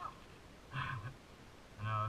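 Brief snatches of a man's voice over a quiet background: a short call about a second in, then speech beginning near the end.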